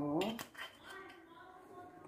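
A few quick, light clinks of kitchenware by the pan as a little olive oil is poured over garlic cloves. A faint, distant voice is heard in the background afterwards.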